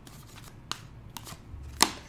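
Tarot cards being drawn from the deck by hand: a few light clicks and slides of card stock, then a sharper card snap near the end.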